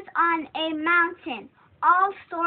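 A high-pitched, sing-song voice in short syllables with brief gaps, held on fairly level notes: a voice put on for a hand puppet.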